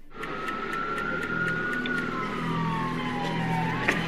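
An emergency-vehicle siren wailing, its pitch sliding slowly down and starting to rise again near the end, over a steady hum and background noise with faint regular ticking.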